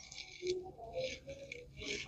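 Quiet room tone with a few faint, brief sounds.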